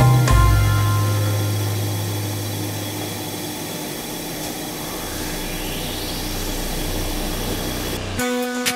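Music fading out about a second in, then a helicopter's turbine engine running with a steady hum and a whine that rises in pitch over the last three seconds.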